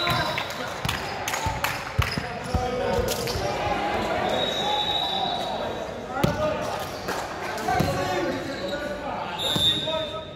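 A volleyball bouncing on a hardwood gym floor a few times, amid players' voices echoing around the sports hall.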